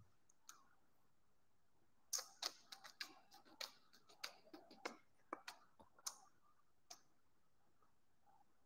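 A quick, irregular run of light clicks and taps, about fifteen in four seconds starting about two seconds in, with a single click before and one after.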